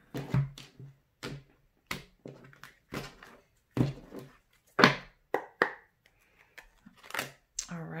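Tarot cards being shuffled and handled by hand over a wooden table: a series of irregular short snaps and taps from the card stock, with quiet gaps between.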